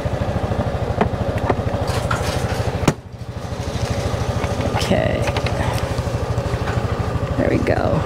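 A 2015 Honda Forza 300 scooter's single-cylinder engine idling with a steady, even low pulse, heard on a helmet-mounted mic. A sharp knock comes about three seconds in.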